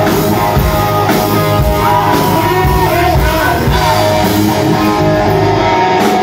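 A hard rock band playing loud and live: electric guitar over the full band, with singing.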